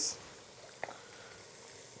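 Meatballs frying in a pan: a faint, steady sizzle, with one small click a little under a second in.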